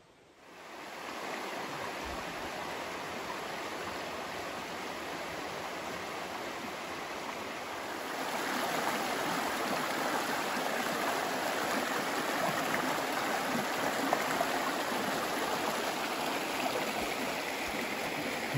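Shallow rocky forest stream rushing over stones in a steady rush of water, which grows a little louder about eight seconds in.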